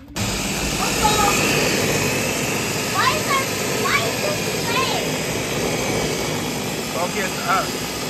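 Electric blender running at full speed, blending frozen strawberries, banana, milk and yogurt into a smoothie. It starts suddenly at the very beginning and runs steadily with a dense whirring noise.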